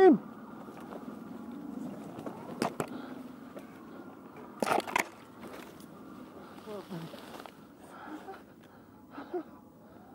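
Mountain bike tyres rolling down a leaf-covered dirt singletrack, a steady rushing noise, with a few sharp knocks from the bike about three and five seconds in.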